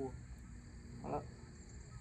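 Quiet outdoor background with faint steady high hiss. A drawn-out vocal sound fades out right at the start, and a single short vocal sound comes about a second in.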